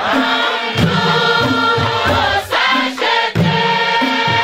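A large group of women singing a hymn together, holding long notes, over a steady beat struck on calabashes by hand.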